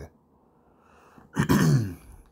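A man clearing his throat once, about a second and a half in.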